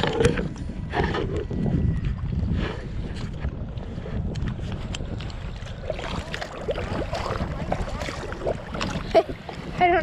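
Wind on the camera microphone with water lapping against a plastic sit-on-top kayak, sprinkled with small splashes and knocks. Near the end the paddle is lifted and dipped, dripping water.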